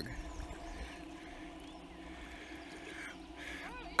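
Quiet riverside ambience with a low steady rumble. A few short rising squeaks come near the end.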